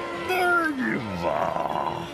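A cartoon character's wordless vocal cry that slides down in pitch, followed by a short fluttering, sob-like sound, over a steady held tone.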